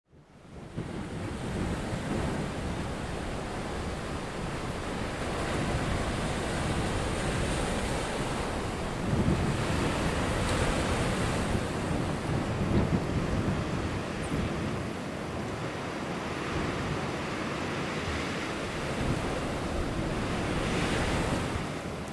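Ocean surf: a steady rush of waves and churning whitewater, fading in over the first second and swelling a few times.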